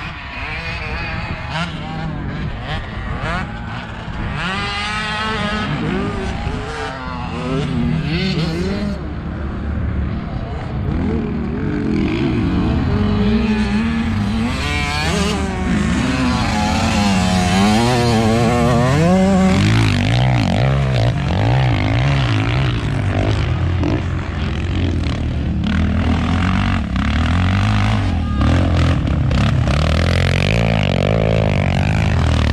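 Off-road motocross engines revving up and down as the machines ride the track, several at once, their pitch rising and falling again and again. The sound grows louder over the first half and stays loud.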